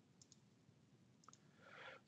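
Near silence with a few faint computer mouse clicks, in two pairs.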